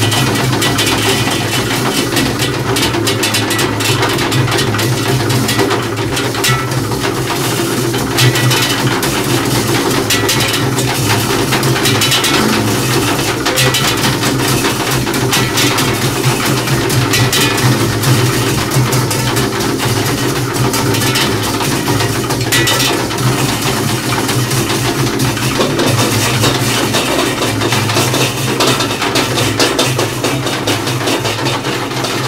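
Two double basses played with extended techniques, metal bowls pressed against the strings and body, making a dense, continuous texture: a steady low drone under a stream of rapid metallic clicks and scrapes.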